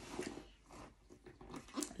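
Faint rustling and light clicks of hands rummaging through the contents of a Marc Jacobs leather tote bag.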